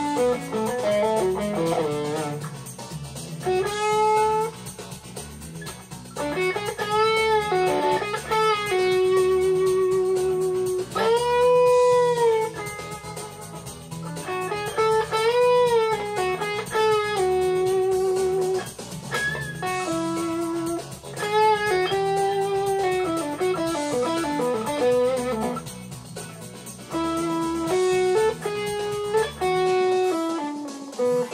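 2005 Gibson Les Paul Standard electric guitar, played through a Lazy J Cruiser overdrive into a Fender Blues Junior amp, soloing blues lead lines in B minor over a backing track. The notes are bent and held with vibrato.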